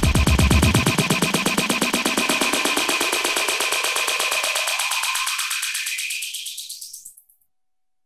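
Electronic dance track held in a very short auto loop, repeating as a rapid stutter. About a second in the bass drops out, then a filter sweeps steadily upward, thinning the loop until it fades to silence shortly before the end.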